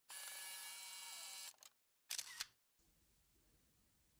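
Intro sound effects: a bright, shimmering sound that lasts about a second and a half, then a short, sharp click-like effect about two seconds in, followed by faint room noise.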